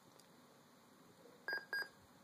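Two short electronic beeps from a Dell Inspiron 6000 laptop's speaker during boot, about a quarter second apart. They come as the BIOS reports an internal hard drive error, because no hard drive is fitted.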